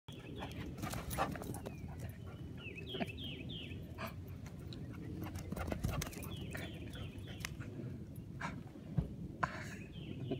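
A dog running and playing across a grassy yard close to the camera, over a steady low rumble of movement with scattered sharp ticks. Short runs of high, falling chirps come three times.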